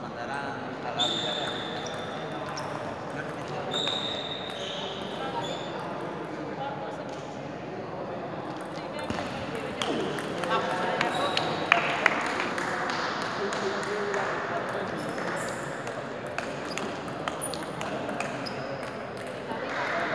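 Table tennis ball clicking off bats and table in a rally, with background voices murmuring in a large, echoing sports hall.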